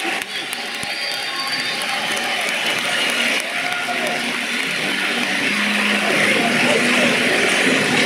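Arena crowd cheering and shouting in a large hall, many voices at once, growing louder toward the end.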